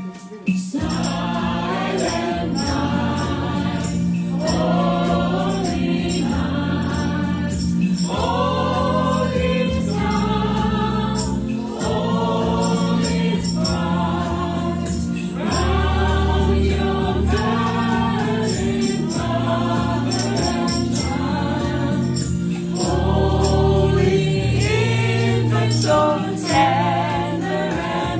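A small group singing a gospel-style Christmas song together, over an accompaniment of held bass notes and a steady percussion beat that starts about a second in.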